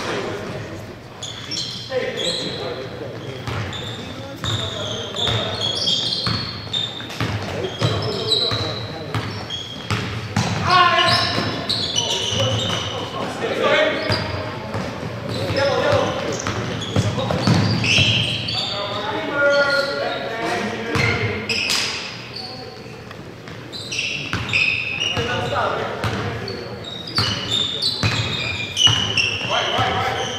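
A basketball bouncing on a hardwood gym floor, with sneakers squeaking in short high chirps and players' indistinct calls ringing in the large hall.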